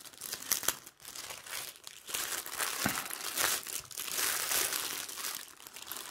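Plastic bags of diamond-painting drills crinkling and rustling as they are handled, on and off with brief pauses.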